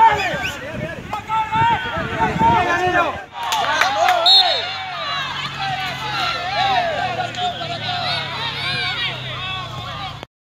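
Many overlapping voices of players and onlookers shouting and calling across a football pitch during play; the sound changes abruptly at a cut about three seconds in.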